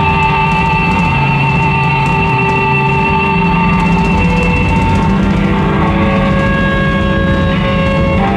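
Live rock band playing an instrumental passage: electric guitar holding long, slightly wavering notes over bass guitar and a drum kit with cymbals.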